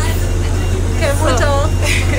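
Steady low rumble inside the carriage of a diesel multiple-unit (DMU) commuter train, with a voice speaking briefly about a second in.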